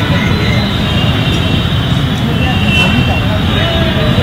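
Outdoor ambience of a cricket ground: indistinct distant voices of players and onlookers over a steady low rumble.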